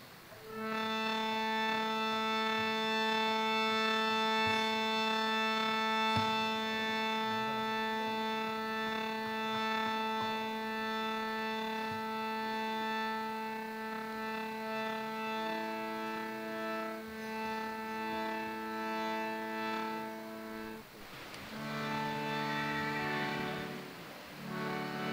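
Harmonium holding long, steady notes over a sustained low note, the upper notes changing now and then; about twenty seconds in the sound breaks off briefly and new notes begin.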